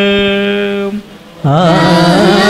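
Liturgical chant: one long held sung note that stops just under a second in, then after a short break singing starts again with a wavering, ornamented melody. It is the sung response to the final blessing of a Mass.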